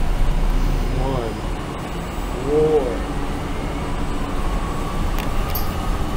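Steady low rumble of a bus running, heard from inside the passenger cabin. Two short vocal sounds come about a second in and just before the three-second mark.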